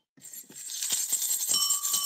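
Jingle bells jingling, starting up again after a brief pause about half a second in and building, with a steady tone joining near the end. It is the chime for 'bells' sent by a viewer during the live stream.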